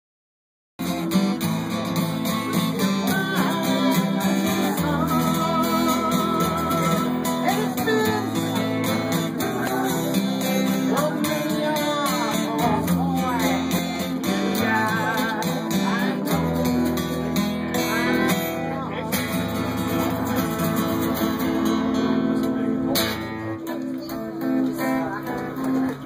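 Several acoustic guitars strumming and picking a song together, with a wavering lead melody line over the chords. The playing eases off and grows quieter near the end.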